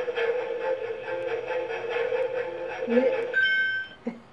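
Lie detector toy's electronic reading tone: a steady hum while it analyses the answer, then a short, higher beep near the end that gives its verdict, here read as a lie.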